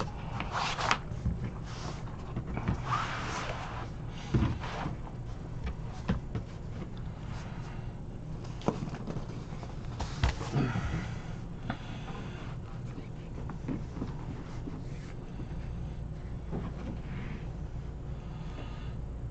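Handling noises on a tabletop: a rubber mat being smoothed and a cardboard case box being lifted and set down, with scattered soft knocks and rustles over a faint steady low hum.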